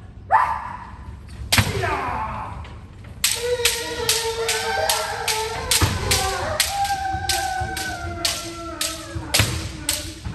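Bamboo shinai striking kendo armour in a fast run of sharp clacks, about three a second, under long drawn-out kiai shouts from several kendoka: the pattern of kirikaeshi done in a single breath. An earlier rising shout and a lone strike come in the first two seconds.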